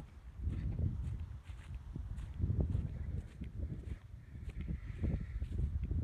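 Footsteps on grassy ground, about two a second, over a low wind rumble on the microphone.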